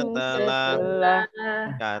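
Melodic chanting of versified Arabic-grammar rules in Indonesian (a nazhom on the fa'il, the grammatical subject). The notes are held, with a brief break a little past a second in.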